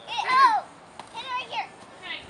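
Young children's voices: two short high-pitched calls amid the play around the pinata.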